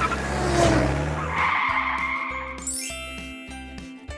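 Racing-car engine and tyre-skid sound for the first second and a half. It gives way to a short, bright music jingle with a rising shimmering sweep, a winner's fanfare.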